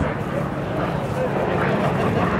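Yak-52's nine-cylinder radial engine and propeller droning steadily overhead, with indistinct public-address commentary mixed in.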